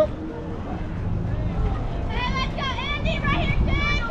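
High-pitched young voices calling out in short, wavering phrases from about halfway through, over a low rumble of wind on the microphone. A single sharp knock comes right at the start.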